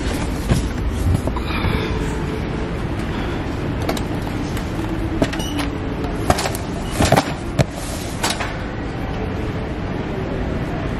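Wire shopping cart rolling over a hard store floor, a steady rumble with the basket rattling. A few sharp knocks break in, the loudest about seven seconds in.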